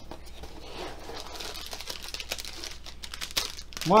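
Plastic packaging crinkling and rustling as it is handled, with a few sharp clicks near the end.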